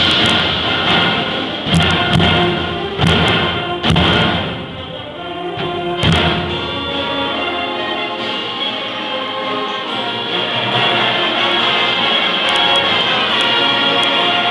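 Concert band of student players performing: heavy percussion hits crash in about five times over the first six seconds against the full band, then the winds settle into sustained chords.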